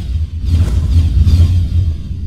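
Cinematic logo-intro sound design: a deep, steady rumbling bass with swooshing noise sweeping over it in the middle.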